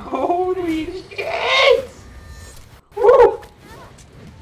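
Wordless human vocal sounds: a drawn-out exclamation in the first second, a louder, higher cry right after it, and a short yelp about three seconds in.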